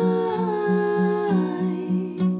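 Wordless hummed vocal over an acoustic guitar: the voice holds a long note that steps down in pitch about halfway through, while the guitar repeats a steady low note about four times a second.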